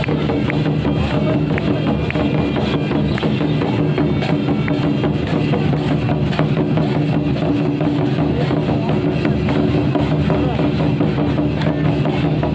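Live Santhali folk music: a harmonium holds steady reed tones while hand-played double-headed barrel drums (tumdak') and a large round drum beat a busy rhythm.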